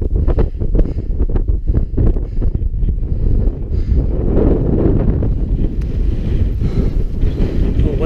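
Wind buffeting the camera's microphone: a loud, gusty low noise, with quick sharp buffets in the first few seconds and a stronger gust about halfway through.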